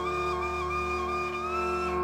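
Shakuhachi flute playing a slow, held melody that steps between a few close notes, over a steady sustained keyboard drone, in calm new-age instrumental music.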